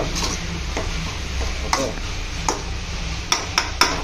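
Metal ladle stirring chopped green beans in an aluminium kadai, scraping and knocking against the pan in separate clicks, with three in quick succession near the end.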